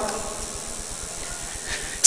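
A pause between sentences of a speech: steady, even background hiss of the hall and broadcast sound with no voice.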